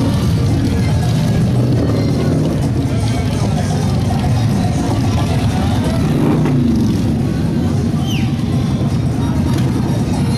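Several motorcycle engines running as a group of motorcycles rolls slowly up the street, with music and crowd chatter mixed in.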